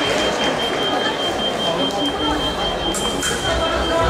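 Busy fencing-hall ambience: many voices and calls with footsteps and movement on the pistes, and a steady high electronic tone that stops about three seconds in.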